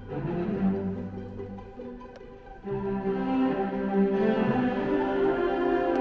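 A student string orchestra of violins and cellos playing bowed music. It grows softer and thinner about two seconds in, then a fuller, louder phrase of held notes comes in just before the middle.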